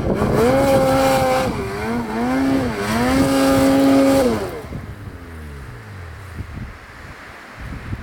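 Ski-Doo Summit 850 two-stroke snowmobile engine revving hard in several bursts, rising, holding and dipping, as the sled works in deep powder. About halfway through the throttle comes off and the engine winds down to a much quieter low run.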